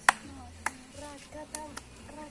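A woman singing a wordless tune, punctuated by three or four sharp claps at an uneven beat; the loudest comes right at the start.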